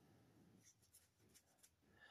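Near silence: a pause between spoken phrases, only very faint background noise.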